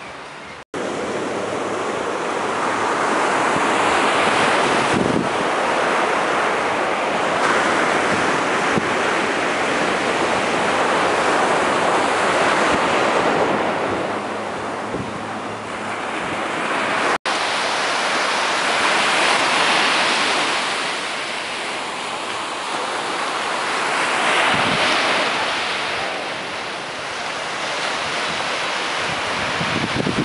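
Surf breaking on a sandy beach, a steady wash of noise that swells and fades every few seconds. The sound cuts out for an instant twice.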